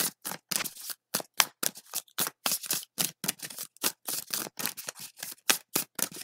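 A deck of tarot cards being shuffled by hand: a quick, even run of light card-on-card slaps, about five a second.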